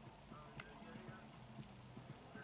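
Near silence: faint room tone with a low hum and one light click about a third of the way in.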